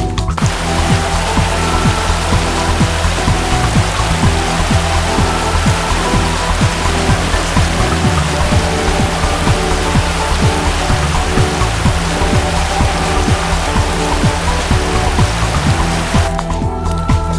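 Rushing mountain stream: a loud, steady wash of water over rocks that cuts in just after the start and stops at the end, over background music with a steady beat.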